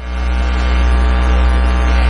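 Steady electrical hum with a buzz of many overtones.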